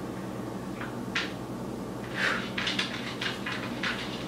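Soft scuffs and taps of sneakers and hands on an exercise mat, a few early and a quick cluster in the second half as the feet are walked in from a plank, over a low steady room hum.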